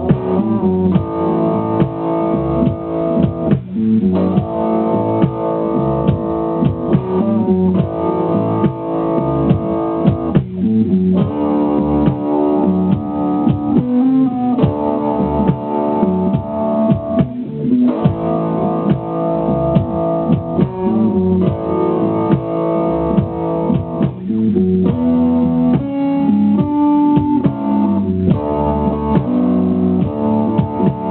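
Slow rock blues backing track in A: a band accompaniment with sustained chords that change about every three and a half seconds, with no lead part, left open for a guitar to play over.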